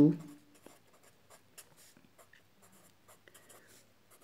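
Felt-tip marker writing on paper: faint, short strokes of the tip across the sheet as words are written out.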